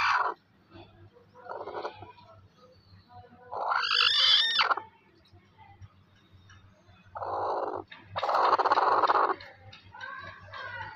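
Broody golden hen on her nest of eggs giving harsh, drawn-out calls: a strong wavering one about four seconds in, then two raspy, noisy growls near the end, the grumbling of a broody hen disturbed on her eggs.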